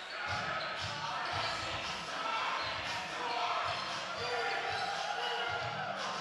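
A basketball being dribbled on a hardwood gym floor, repeated bounces roughly two a second, over the chatter of players and spectators in a large gym.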